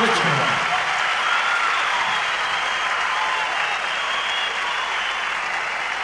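Audience applauding steadily after a live performance, with voices calling out from the crowd over the clapping.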